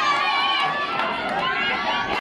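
Many spectators' voices overlapping at the trackside, shouting and talking at once at a steady level as the runners finish.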